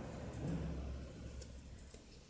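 Faint handling sounds of hand knitting on two needles: a few light ticks over a low rumble that swells about half a second in.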